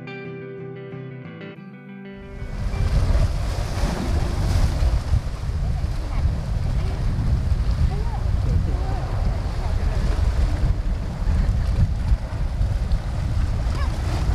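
Background music for about two seconds, then loud sea surf washing and foaming into a narrow rock inlet, with wind rumbling on the microphone.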